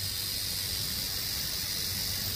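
Timber rattlesnake rattling its tail: a steady, unbroken high buzz from the coiled snake, its defensive warning.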